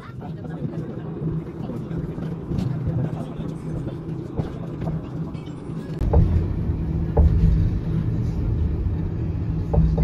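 Cabin noise inside a moving city bus: a steady engine hum with road rumble. About six seconds in, the rumble grows heavier, and a few light knocks come through.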